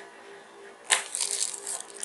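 Clear plastic packaging bag crinkling and rustling in the hands, starting with a sharp crackle about a second in.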